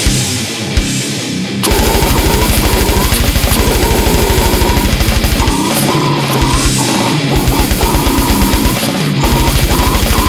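Brutal death metal: distorted electric guitars over programmed drums with a rapid, even double-kick bass drum. The kick drum is absent for the first second and a half, then drops out twice more for short breaks around the middle.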